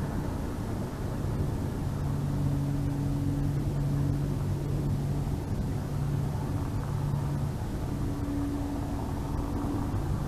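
A distant engine droning with a steady low hum that swells and fades over a few seconds, over a low rumble of outdoor noise.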